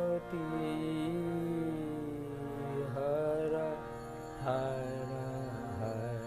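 A man singing a devotional song in long held notes that slide from pitch to pitch, over a harmonium's steady accompaniment.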